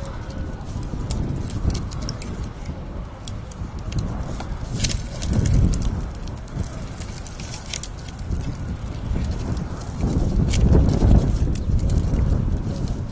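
Pruning shears and loppers snipping fruit-tree branches: a scattering of sharp clicks, the loudest about five seconds in. A low rumble swells twice beneath them.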